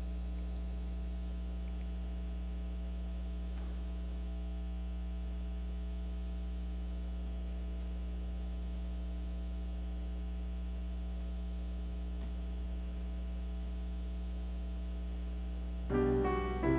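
Steady electrical mains hum: a low drone with fainter, higher buzzing tones stacked above it.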